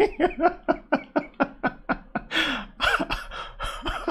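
A man laughing in a quick run of short bursts, about five a second, going over into a few longer laughs in the second half.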